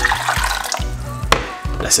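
Hot tea poured from a glass bowl into a stainless steel saucepan, a splashing pour under background music with a steady beat. The pour gives way to a single sharp click about a second and a half in.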